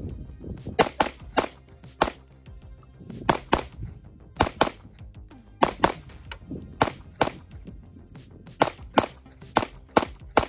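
Sig Sauer P365X Macro Comp 9mm pistol firing a string of about sixteen shots, mostly in quick pairs with short pauses between.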